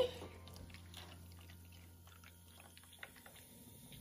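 Faint fizzing from a toy volcano's fizzy-lava powder reacting with the water just poured in: a scatter of tiny crackling pops.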